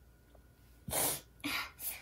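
A woman's short, sharp breathy bursts from the nose and mouth, three in quick succession starting about a second in, the first the loudest.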